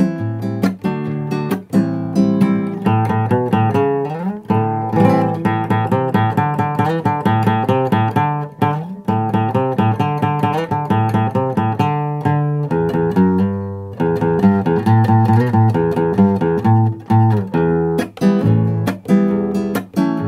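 Nylon-string classical guitar strummed in a balada rock rhythm: steady down-and-up strokes with sharp accents, changing between chords.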